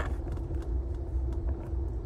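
Low, steady rumble with a faint continuous hum above it.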